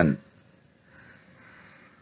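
A faint bird call about a second in.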